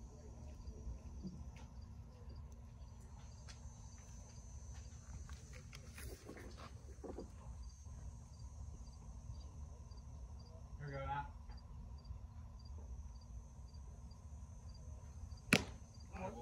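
Quiet ballfield ambience with faint high ticks about twice a second and a short distant shout about eleven seconds in. Near the end comes a single sharp crack at home plate as the batter swings at a pitch.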